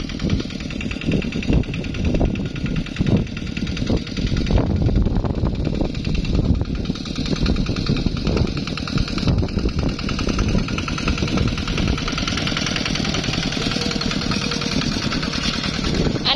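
Two-wheel walk-behind tractor's single-cylinder diesel engine running under load with a steady rapid chugging beat as the tractor is driven through wet paddy mud.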